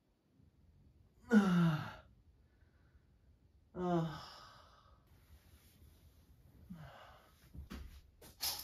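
A man's voice giving two long sighs, falling in pitch, as he stretches awake on a futon, about a second in and again near four seconds, followed by a shorter one and a few soft knocks near the end as he gets up.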